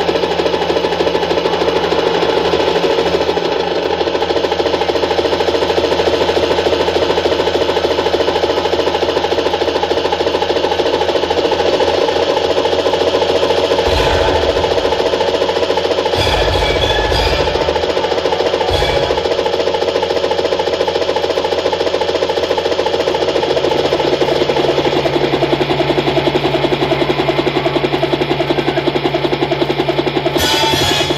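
Helicopter sound effect played over stage loudspeakers: a steady, rapidly beating engine-and-rotor drone mixed with background music, with a few low thumps around the middle.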